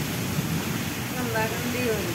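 Heavy rain pouring down in a strong windstorm: a steady, even rushing hiss. A voice speaks faintly in the second half.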